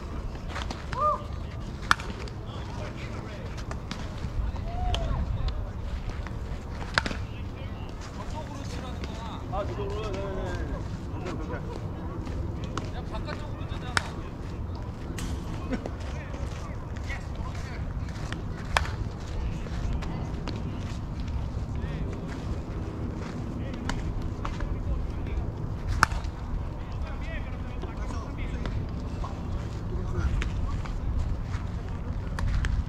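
Wind rumbling on the microphone, with faint distant voices and a handful of sharp knocks spread through, about five in all.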